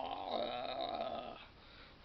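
A man's drawn-out wordless vocal sound, a long 'aah'-like groan held at one pitch, which breaks off about one and a half seconds in.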